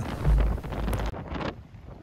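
Gale-force wind buffeting the microphone on a stormy coast: a deep, rough rumble that cuts off suddenly about a second in, leaving only fainter background noise.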